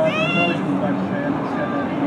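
A person's high-pitched cry lasts about half a second at the start, a staged shout for help from the person overboard. Under it, a rescue boat's engine runs steadily at speed with the hiss of its spray.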